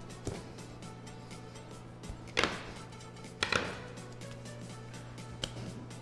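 Quiet background music with a steady low hum, and two brief swishing rubs about two and a half and three and a half seconds in as bun dough is pressed and flattened on a stainless steel worktable.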